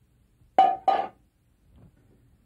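Two clinks of kitchenware against cookware, about a third of a second apart, each ringing briefly with a clear tone.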